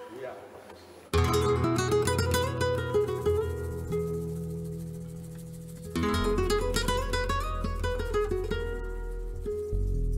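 Acoustic flamenco guitars strike up suddenly about a second in, with strong low notes underneath, playing the opening of a Catalan rumba. A second loud phrase comes in about six seconds in.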